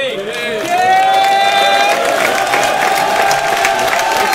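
Live crowd cheering and shouting, with a long held shout near the start and scattered clapping joining in, reacting to the punchline that ends a rapper's round.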